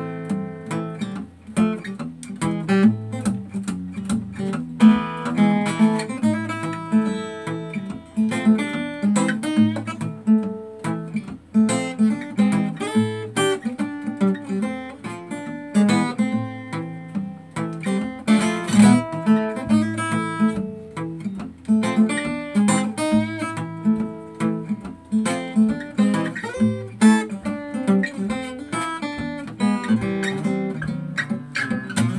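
Solo acoustic guitar, fingerpicked, playing a Spanish ragtime piece: steady bass notes under a picked melody, going on without a break.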